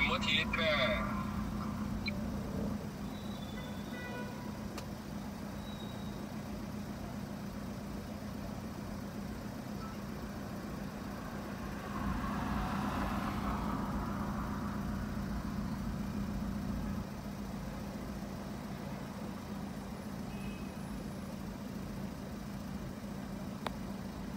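Car cabin hum in a traffic jam: a steady low engine and road drone with a held hum. From about halfway, a louder hiss swells for about five seconds and then fades back.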